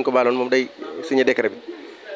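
A man speaking into a handheld microphone, in short phrases broken by brief pauses.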